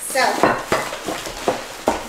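Packing paper crinkling and rustling as a wrapped item is dug out of it, with a few sharper crackles, the last near the end.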